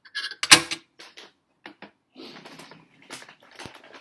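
Glass and ceramic tea ware handled on a tea tray: one sharp clink or knock about half a second in, a few light clicks after it, then soft rustling.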